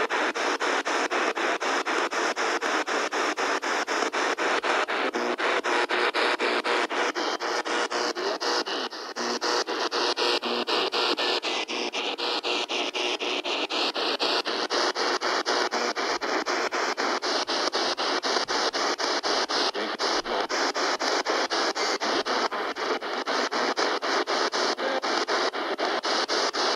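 P-SB7 spirit box sweeping through radio stations: a steady hiss of static chopped into rapid, even pulses by the scan.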